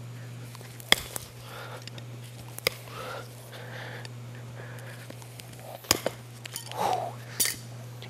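A hoof knife and trimming tools working a horse's hoof: faint paring and scraping with a few sharp metallic clicks, the clearest about a second in, near three seconds and near six seconds. A steady low hum runs underneath.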